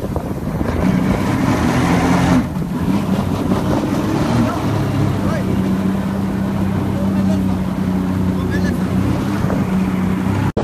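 Motorboat engine running steadily under way, a constant low drone, over the rush of churning wake water and wind on the microphone.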